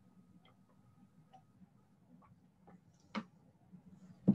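Near silence: room tone with a few faint, scattered clicks, the sharpest about three seconds in.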